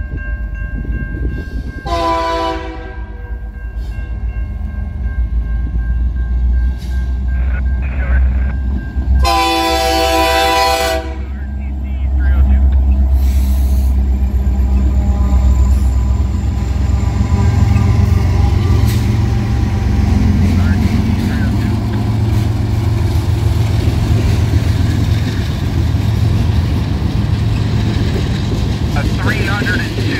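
Freight train's diesel locomotives sounding the horn in two blasts, the second longer, as they approach slowly. Then a loud low engine rumble as the locomotives pass, followed by the steady rolling of the freight cars.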